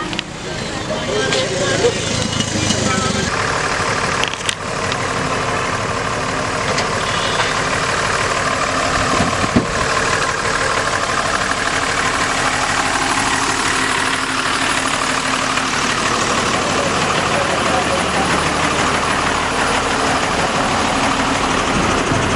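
Heavy vehicle engines, a bus and a truck, running and passing close by, with people's voices talking over them throughout.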